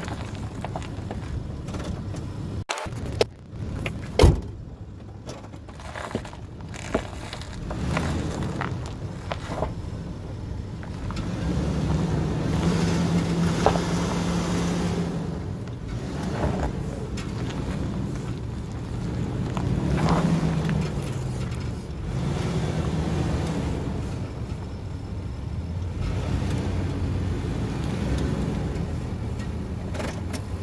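2003 Nissan Pathfinder's 3.5-litre V6 running at low revs as the SUV crawls over dirt and rock, with a few sharp knocks in the first several seconds. The engine note holds steady for a few seconds near the middle, then rises and falls briefly about two-thirds of the way through.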